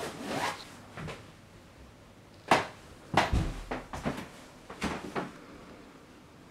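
A series of knocks, clicks and rustles: a rustle at the start, a sharp knock about two and a half seconds in that is the loudest, then a cluster of duller thuds and further knocks through the middle.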